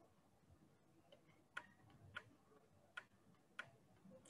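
Near silence with four faint, sharp clicks spaced a little over half a second apart, from a pointing device clicking as a word is handwritten on an on-screen whiteboard.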